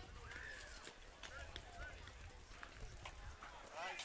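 Faint, distant voices of players and spectators calling and chattering across an open ball field, with a few short clicks and a low rumble of wind on the microphone.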